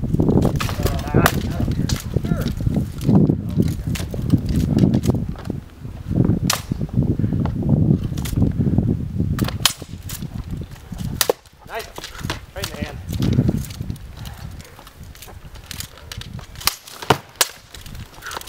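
Swords striking shields and blades during armoured sword-and-shield sparring: many sharp, irregular cracks, some in quick pairs, over a low rumble.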